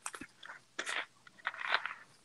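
A clear plastic water bottle being handled, crinkling in a handful of short, irregular crunches.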